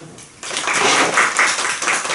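A small group clapping, starting suddenly about half a second in.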